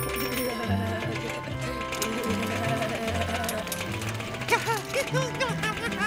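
Upbeat cartoon background music with a bouncing bass line. From about four and a half seconds in, a run of short, high, squeaky chirps joins it: a cartoon ferret giggling.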